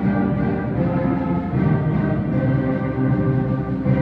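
Junior high school concert band playing together, woodwinds and brass holding sustained chords that shift from note to note.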